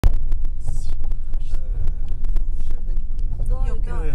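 In-cabin road noise of a car driving down a rough dirt track: a steady low rumble with many small knocks and rattles from the wheels and suspension on the uneven ground. A man starts speaking near the end.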